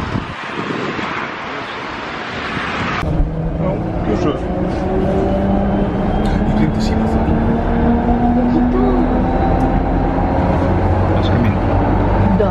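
Outdoor rushing noise at the platform, then, from inside a moving electric passenger train, a steady low rumble with a motor whine that slowly rises in pitch as the train gathers speed.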